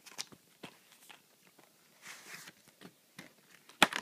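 Cardboard slipcover being slid off a plastic Blu-ray case: light clicks and a soft rustling slide about halfway through, then one sharp knock near the end as the case meets the surface.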